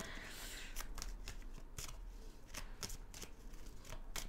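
A deck of Lenormand cards shuffled by hand, a faint, irregular run of soft ticks and riffles as the cards slip over one another.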